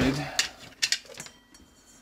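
A few light clicks and taps as a plastic wiring-harness connector and its wires are handled on a workbench, about three in the first second.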